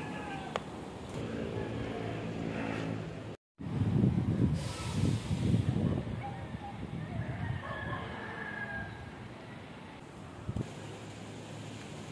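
A rooster crowing a few times, with gusty low rumbling of wind on the microphone that is loudest just after a cut about three seconds in. Before the cut there is a steady low hum.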